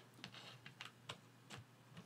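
Faint, irregular small clicks and taps, about eight in two seconds, over a low steady hum.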